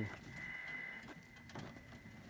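The VSP 14000 power cart's electric drive whining in a steady high tone as it rolls itself over rough dirt, with a low rumble of the wheels on the ground. The whine fades near the end.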